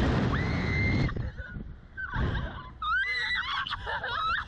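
Two young riders screaming and laughing on a reverse-bungee slingshot ride, with wind rushing over the onboard microphone. One long held scream in the first second, then mostly rushing air, then a burst of shrieking laughter near the end.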